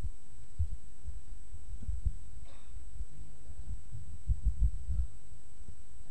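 Microphone handling noise: irregular low thuds and rumbles as a hand grips and adjusts a microphone on its boom stand, over a steady electrical hum.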